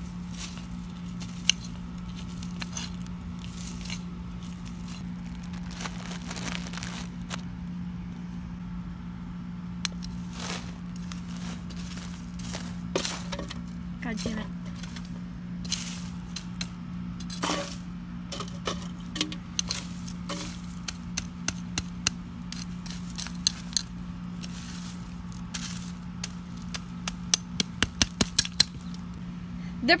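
Soil and dead leaves being scraped and turned with a digging tool: irregular scraping and crunching strokes, then a rapid run of sharp clicks near the end, over a steady low hum.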